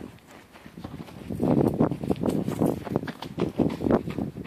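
Running footsteps crunching in snow close to the microphone, about three to four steps a second, starting quietly and getting loud about a second and a half in.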